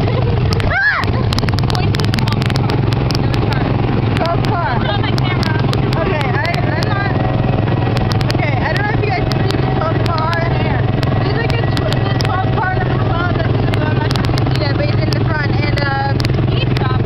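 Small gasoline engine of a ride car on the Tomorrowland Speedway track, heard from the seat: a steady low drone. Other cars' engines join in, along with scattered rattles and clicks.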